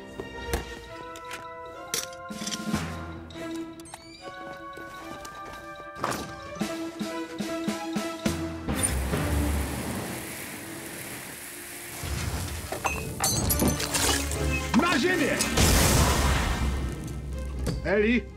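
Dramatic cartoon background music with held notes. About nine seconds in it gives way to a steady rushing spray of water from a fire hose, which grows louder over the last few seconds.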